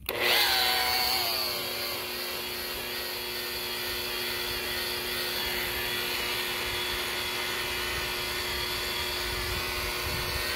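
DeWalt DWP849X rotary buffer starting suddenly and then running steadily, its wool pad rubbing compound into a fibreglass boat's gelcoat. Its pitch drops a little over the first second or two as the pad settles onto the surface. The buffer is compounding out oxidation.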